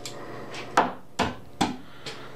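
Three sharp knocks of a hard object, evenly spaced about 0.4 s apart.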